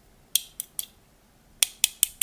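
Small screwdriver tip tapping against the metal bayonet mount of a Viltrox EF-M2 lens adapter, testing whether the parts are metal: a few light, sharp metallic ticks, three in the first second and two more near the end.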